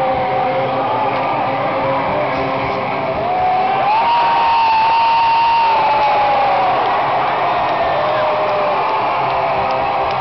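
Crowd cheering and shouting at a rock concert, with little of the band's music. About three seconds in, a long held shout rises, holds for a few seconds and falls away, and the noise swells while it lasts.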